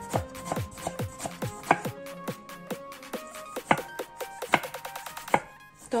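Kitchen knife chopping a tomato on a wooden cutting board: a steady run of sharp knocks, about two to three a second, that stops shortly before the end, over background music.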